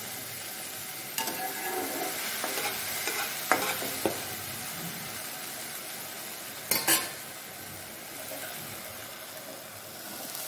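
Sliced mushrooms sizzling as they fry in oil in a non-stick pan, stirred and scraped with a spatula. A few sharp knocks of the spatula against the pan come through, the loudest a quick pair about two-thirds of the way in.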